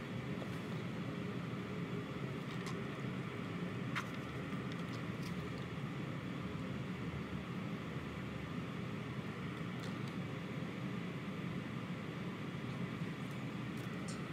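Steady, even background noise, mostly a low rumble, with a few faint soft clicks scattered through it.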